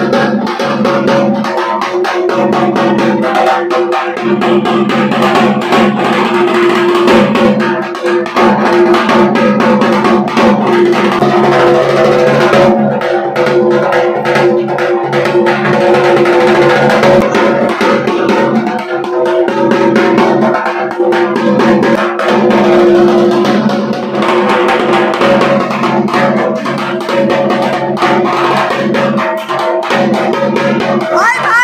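A dhak, a large Bengali barrel drum, beaten with sticks in a continuous stream of rapid strokes, over steady held musical tones.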